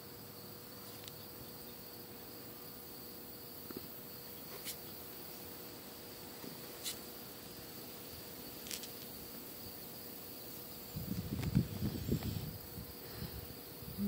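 Steady high-pitched chirring of crickets, with a few faint sharp clicks as tarot cards are laid down on a blanket. About eleven seconds in, a couple of seconds of low rumbling.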